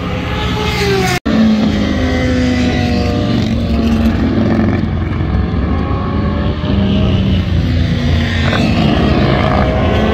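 Several sport motorcycle engines running on a race track, their pitches rising and falling as they rev and shift, with a short break in the sound about a second in.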